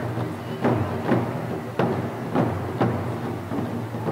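Taiko barrel drums struck with wooden sticks: about six heavy beats in an uneven rhythm, each ringing on low after the hit.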